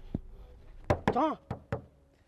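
A few sharp knocks, spaced irregularly across two seconds, with a short spoken syllable about a second in.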